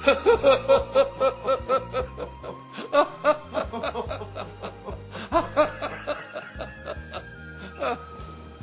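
An elderly man laughing aloud in quick, rhythmic ha-ha pulses. The laugh eases off after a couple of seconds and breaks out again about five seconds in, over soft background music.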